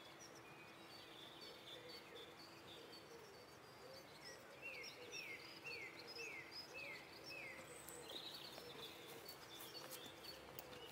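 Faint outdoor birdsong: several small birds chirping, with a run of five quick falling notes near the middle, over a faint steady low hum.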